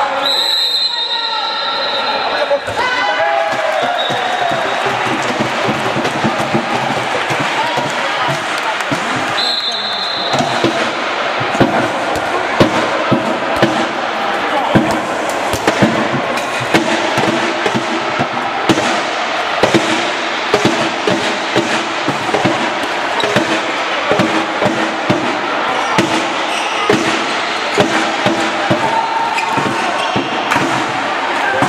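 Handball match play: the ball bouncing and striking the court again and again, over constant crowd voices. A referee's whistle blows near the start and again briefly about nine and a half seconds in.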